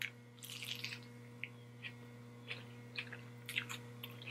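Close-miked biting and chewing of a lettuce-wrapped burger: soft crisp crunches and wet mouth clicks, denser in the first second and then scattered irregularly, over a faint steady low hum.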